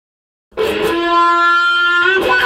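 Electric guitar played through a wah pedal: about half a second in, one note starts and is held, bright and horn-like.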